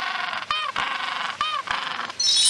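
Penguin calling twice, about a second apart, each short call rising and then falling in pitch, over a steady hiss.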